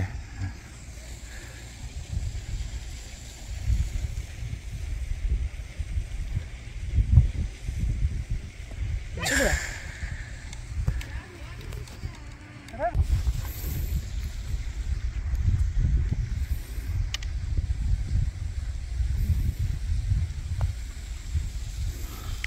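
Wind buffeting the microphone outdoors, a gusty low rumble throughout, with a brief sharper sound about nine seconds in.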